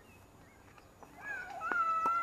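A sharp knock, a tennis ball being hit, about three-quarters of the way in. Around it runs a loud, high, wavering call lasting about a second, whose source is not shown.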